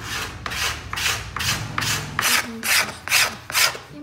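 Steel cabinet scraper drawn in short, even strokes across a carved flamed-maple violin plate, about ten rasping scrapes in four seconds. This is the smoothing of the plate's arching after the small finger planes, taking off the ridges the planes left.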